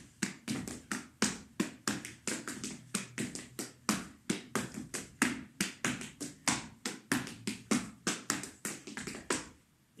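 Zapateo footwork: hard-soled shoes striking a wooden floor in a quick, uneven rhythm of heel and toe taps, about four strikes a second, as a variant of a basic pasada is danced. The taps stop just before the end.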